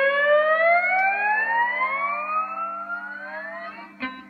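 Gibson BR-9 lap steel guitar through a Fender Twin Reverb amplifier: a held note slides slowly up in pitch under the steel bar and fades, while lower notes ring on steadily beneath it.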